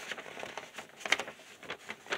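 Faint rustling and crinkling of notebook paper sheets being handled and turned, with a slightly louder crinkle about a second in.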